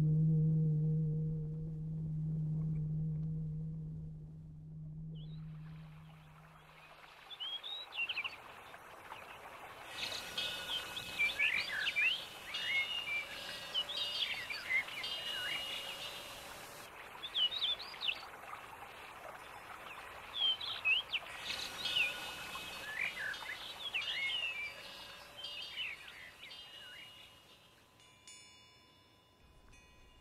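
A low ringing tone with overtones fading away over the first six or seven seconds, then birds chirping and calling over a faint hiss until the sound fades out shortly before the end.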